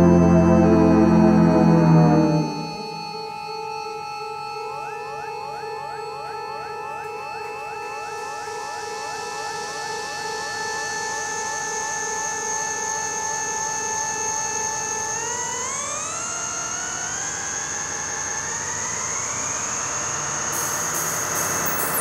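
Live band's held chord cuts off about two seconds in, leaving a quieter synthesizer interlude: a sustained chord with a quickly repeating upward-sliding note, then slow rising sweeps in pitch toward the end.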